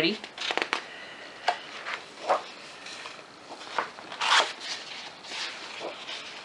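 Sheets of patterned scrapbook paper being handled and turned over by hand: a few short, irregular rustles and scrapes of paper sliding over paper, the longest about four seconds in.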